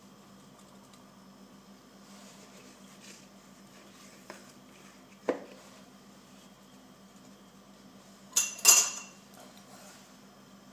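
Silicone spatula knocking and scraping against a stainless steel mixing bowl as soft cookie dough is divided into it: a faint tap about four seconds in, a sharp knock a second later, and a louder ringing metallic clatter near the end.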